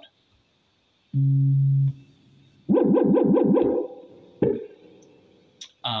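Eurorack modular synthesizer tones: a steady low held note for under a second, then about a second of a rapidly repeating note at roughly seven pulses a second, then a single short hit that rings away. The sound changes as the Gliss controller module is stepped through its modes.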